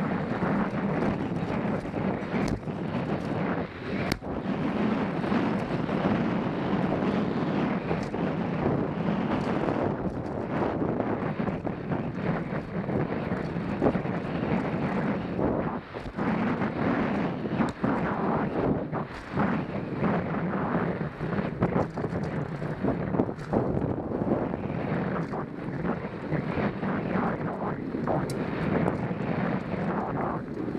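Wind rushing over the microphone of a body-mounted camera on a fast downhill mountain bike run, with the tyres rumbling over a dry, loose dirt trail. The bike rattles and knocks sharply over bumps and roots throughout.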